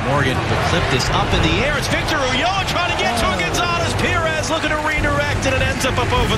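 Footballers shouting and calling to one another during play, with sharp thuds of the ball being kicked between the calls.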